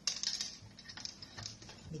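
Salted, split fish being pressed and arranged in a frying pan by hand: a rapid run of small crackles and clicks that starts suddenly and thins out after about a second and a half.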